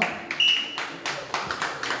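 Scattered hand clapping from a small audience, a few uneven claps a second, with a brief high tone about half a second in.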